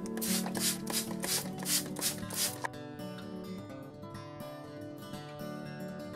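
Hand spray bottle of water misting the scenery: about seven quick squirts, roughly three a second, over the first two and a half seconds, with background music throughout.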